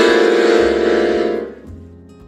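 Piano accordion sounding one loud held chord for about a second and a half, then stopping.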